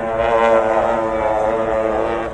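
Long ceremonial processional horns with large flared bells, blown together as one long, steady, loud blast.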